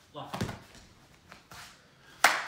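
A man's voice says one word, "lock," with a short knock about half a second in. The rest is quiet room tone.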